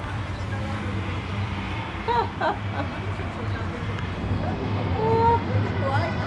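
Street ambience: a steady low hum with a faint background haze, and a few faint distant voices about two seconds in and again near five seconds.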